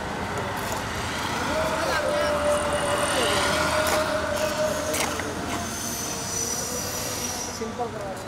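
Outdoor background of indistinct voices over a steady traffic-like rumble, with a long held tone from about a second and a half in, lasting some three seconds.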